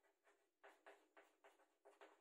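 Very faint scratches of chalk on a chalkboard as letters are written: about five short strokes in the second half.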